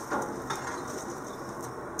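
Steady rush of a coal forge fire, with a few faint metal clicks from tongs being worked in the coals.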